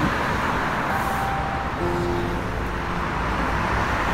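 Steady traffic noise from a busy multi-lane highway, many cars running along it at once, with a constant low rumble.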